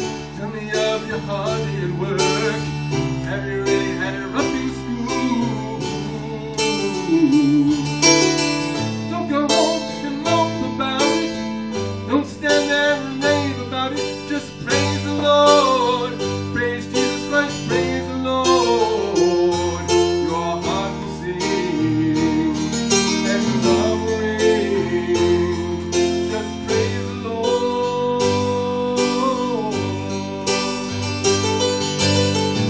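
Electronic keyboard playing a song in many quick notes over a steady bass line, with a plucked-string tone, and a man singing along into a microphone.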